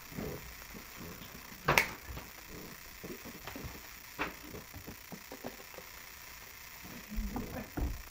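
A partly filled plastic water bottle flipped and landing on a table with one sharp knock about two seconds in, followed by a fainter click and a few low thuds near the end.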